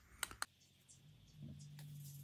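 Three quick light clicks on the hard stone worktop, then a low steady hum comes in just past halfway.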